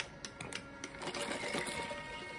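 A drink being sucked through a plastic straw: a run of small irregular clicks and crackles that grows denser and busier in the second half.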